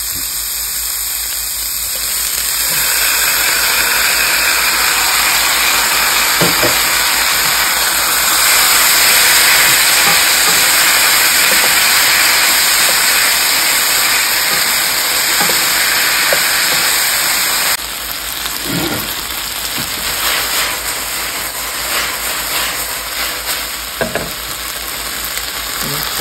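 Chicken and vegetables sizzling in a hot nonstick frying pan, the sizzle swelling a couple of seconds in as the chicken goes into the pan. It drops suddenly about two-thirds of the way through, leaving a softer sizzle with a wooden spatula scraping and tapping against the pan.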